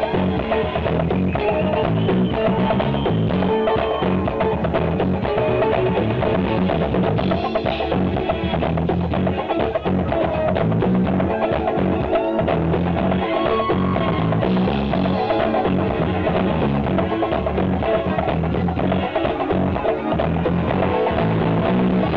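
Live band playing a dance tune, with drums and percussion keeping a steady beat under guitar.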